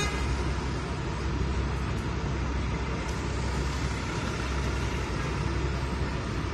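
Steady engine and tyre noise of a convoy of camouflaged military vehicles driving past on a city street, a continuous low rumble with no sudden events.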